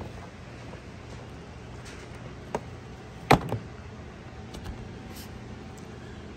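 Steady low room hum with a few light clicks from handling a plastic saddlebag lid and speaker grille, including one sharp click just past the middle.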